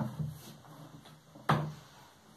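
A sharp knock about one and a half seconds in, with a quieter knock at the very start and faint handling noises between.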